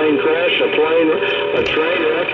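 A CB radio's speaker playing a strong incoming transmission on channel 28. Voices come through as a dense, garbled jumble that is hard to make out.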